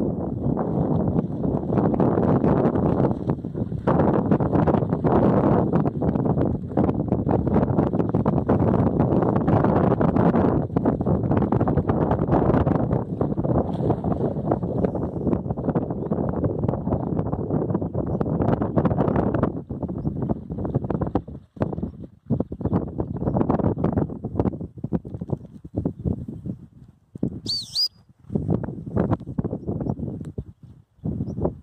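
Wind buffeting the microphone in a steady, loud rush that breaks into irregular gusts with short lulls about two-thirds of the way through. A single short bird chirp sounds near the end.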